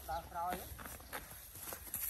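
A brief voice near the start. Then a couple of soft crunches from grazing cattle on dry grass stubble.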